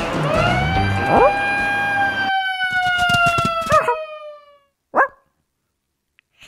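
A cartoon dog's long howl that slowly falls in pitch over about four seconds, over music that cuts off halfway through. It is followed by a single short yelp about five seconds in.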